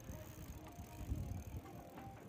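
Electric bicycle rolling close past over cobblestones, a low rumble that swells and is loudest about a second in.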